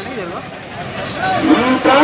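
A man's voice amplified through a microphone and loudspeakers. It dips into a short pause in the first second or so and resumes loudly about a second and a half in.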